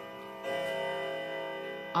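Grandfather clock chiming loudly: a new chime strikes about half a second in and rings on as several held tones.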